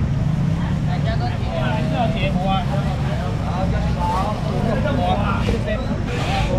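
Indistinct chatter of several people talking around a busy street-market fish stall, over a steady low hum.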